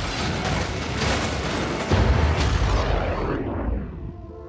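Film sound effects of a large explosion, a dense rumble with debris, and a second heavy boom about two seconds in. The sound thins out and fades near the end.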